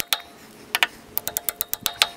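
A nail being driven into framing lumber with quick, sharp metallic strikes: a couple of taps a little under a second in, then a fast run of about ten a second near the end.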